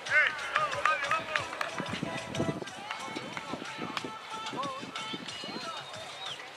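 Shouted voices on an open football pitch, loudest in the first second, with scattered sharp thuds of footballs being struck during goalkeeper drills.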